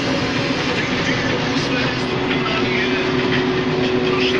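Case IH 1620 Axial-Flow combine running, heard from inside the cab: a steady mechanical rattle and drone, with a steady whine coming in about halfway through.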